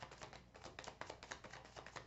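A deck of baralho cigano (Lenormand-style) cards being shuffled in the hands: a quick, irregular run of faint card clicks.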